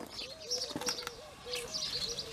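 Birds calling: a low, short note repeated many times, mixed with high chirps.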